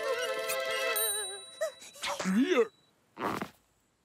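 Cartoon soundtrack: a quivering, wavering voice-like tone for the first second and a half, with a bright ding ringing out about a second in. A short rising-then-falling vocal sound follows, then a brief burst of noise, and the sound stops.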